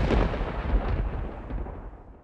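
Thunder sound effect: a sudden crack that trails off into a deep, crackling rumble, fading steadily away.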